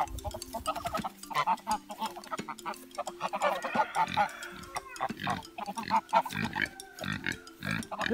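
A flock of Pilgrim geese chattering at close range, many short, low calls overlapping one another.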